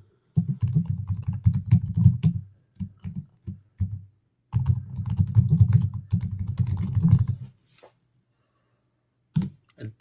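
Typing on a computer keyboard in two quick runs of keystrokes. The first stops about four seconds in, and the second runs from about four and a half to seven and a half seconds.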